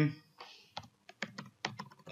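Computer keyboard typing: a quick run of separate keystrokes as a customer code is entered into a form field.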